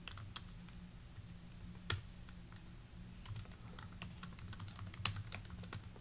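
Typing on a computer keyboard: faint, irregular key clicks in quick runs, with one louder keystroke about two seconds in.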